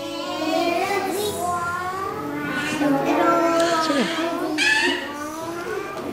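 Several young children's voices, drawn out and sing-song, overlapping one another with long held pitches.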